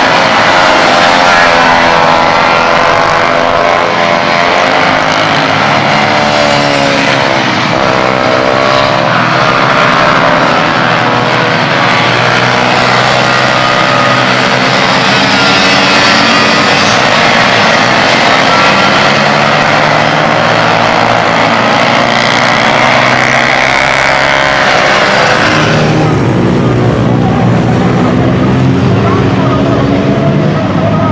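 Several racing minibike engines running at high revs as they pass, their overlapping pitches rising and falling with throttle and gear changes.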